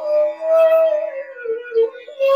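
Bansuri (bamboo transverse flute) playing a phrase of Raga Kedar: a long held note that bends slightly upward, then steps down to two shorter lower notes near the end. A steady low drone note sounds beneath it.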